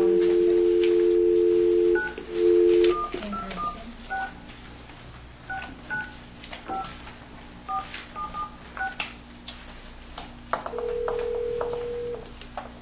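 Speakerphone dial tone that cuts off about two seconds in, then touch-tone keypad beeps as a phone number is dialled, about ten digits over the next seven seconds. Near the end the ringback tone starts as the call rings through.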